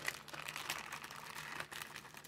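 Crinkly packaging handled and rustled by hand: a run of quick crackles and small clicks.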